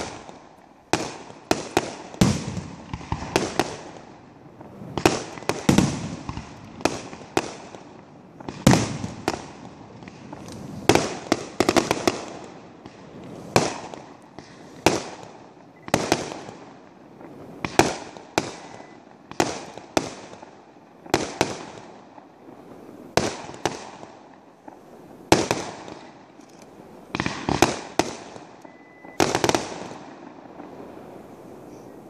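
Aerial firework shells launching and bursting in quick succession: a steady run of sharp bangs, about one a second, each trailing off in an echoing tail.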